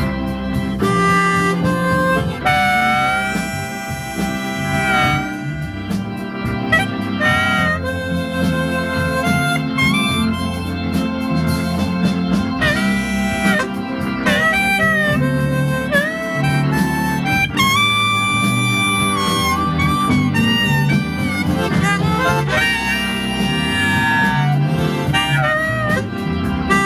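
Harmonica solo played into a microphone, with bending and held notes over a band's accompaniment that includes guitar.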